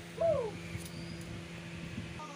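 A single short bird call that glides down in pitch, heard just after the start, over a steady low hum.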